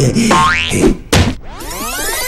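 Cartoon sound effects over music: a rising boing-like glide, a sharp knock about a second in, then a long rising glide.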